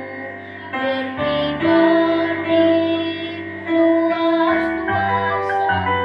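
A girl's solo voice singing a slow song in Indonesian, accompanied by grand piano chords, holding long sustained notes.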